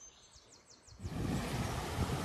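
A bird chirps a few quick, falling high notes against near silence. From about a second in, a steady rushing noise of wind on the microphone takes over.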